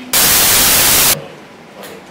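A loud burst of electronic static hiss from the microphone and sound system, about a second long, that starts and cuts off abruptly. Faint room noise and a light tap follow.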